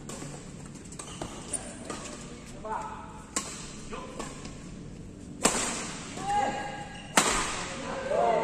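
Badminton racquets striking a shuttlecock in a doubles rally: a string of sharp cracks, each ringing in the large hall, the loudest two near the end. Short calls from the players come between the shots.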